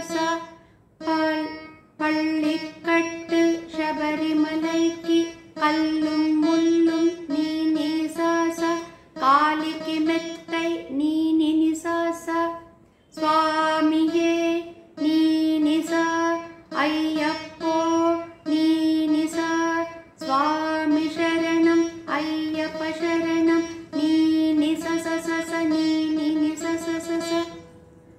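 Saraswati veena being plucked in a phrase of repeated notes on the upper-octave ni and sa (kakali nishadam and tara shadjam), with sliding gamaka bends between notes. The phrase is repeated several times, with short pauses between repeats.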